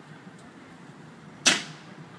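A single sharp bang about one and a half seconds in, dying away quickly, over faint steady background noise.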